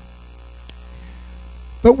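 Steady low electrical mains hum in the microphone signal, with a faint click about a third of the way in. A man's voice starts just before the end.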